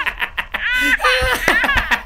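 A man laughing loudly in a fast, even run of breathy pulses, broken by a couple of short pitched whoops.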